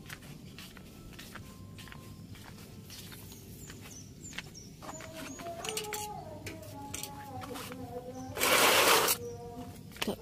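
Handling clicks and light steps as a handheld camera is carried along. From about halfway there is a faint melody of held notes, and a brief loud rush of noise comes near the end.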